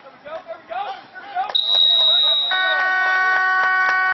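A referee's whistle blows one steady high note for about a second. Overlapping its end, a buzzer-like horn sounds for about a second and a half and cuts off suddenly.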